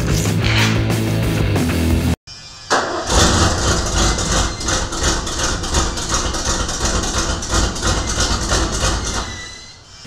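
Rock music for about two seconds, cut off abruptly; then a 1986 Ford F-250's engine starts and runs, its exhaust loud through a rusted-through muffler, fading down near the end.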